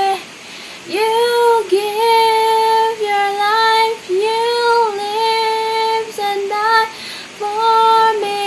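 A young girl singing a worship song solo and unaccompanied, holding long notes with smooth slides between them and short breaks for breath.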